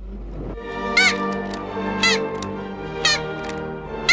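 Cartoon soundtrack playing on a television: music under a short, high, bent note that rises and falls back about once a second, four times, the last one loudest.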